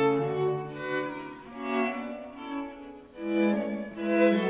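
A string quartet (two violins, viola and cello) playing together: long bowed notes layered in chords, the phrases swelling and fading, with a quieter dip about three seconds in before the next swell.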